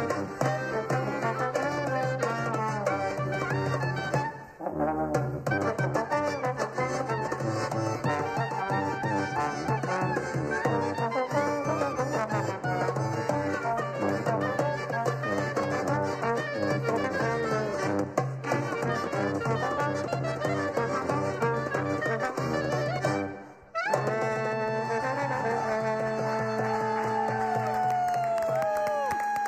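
A live band of clarinet, accordion, trombone, sousaphone and a hand-played goblet drum plays a lively tune. The music breaks off twice for a moment. After the second break, near the end, the band holds a long closing chord.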